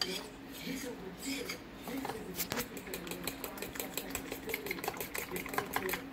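A fork beating casein protein powder and almond milk into a thick batter in a bowl, its tines clicking against the bowl. The clicks come irregularly at first, then from about two seconds in settle into a fast, even run of several clicks a second.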